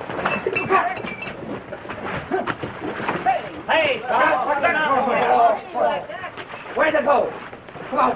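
Several men shouting and yelling over one another, with knocks and bumps from a scuffle.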